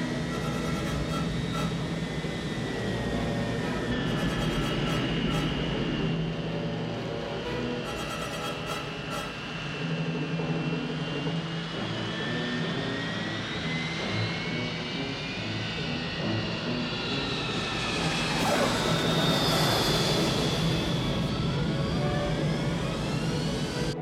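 Film score music mixed with the whine and rumble of jet airliner engines as a plane comes in to land. The engine noise swells to its loudest a few seconds before the end.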